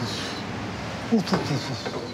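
Professional kitchen background noise: a steady rush, with a short burst of voices about a second in.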